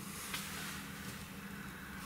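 Quiet room tone with a steady low hum and a faint tick about a third of a second in.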